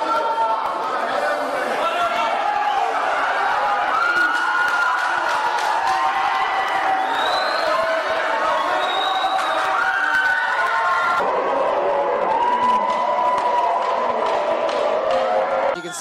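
Crowd shouting and yelling over one another, loud and continuous, with long held cries, stopping suddenly near the end.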